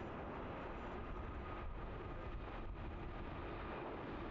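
Qatar Airways Airbus A350 jet engines at takeoff thrust, heard from a distance as a steady rumble with a faint steady whine above it.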